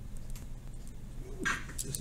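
Pen tip tapping and scratching short tick marks on paper, a few faint strokes, over a low steady room hum. Near the end comes a brief louder sound, a breath or the start of a voice.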